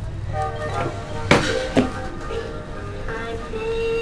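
Battery-operated plush bear toy, just switched on, playing an electronic tune of held single notes, with two sharp knocks about a second and a half in.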